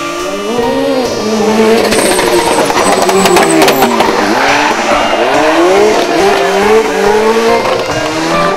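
Ford Sierra Cosworth rally car at racing speed, its turbocharged four-cylinder engine revving up and falling back again and again through gear changes and lifts for the bends, with tyres squealing through a hairpin.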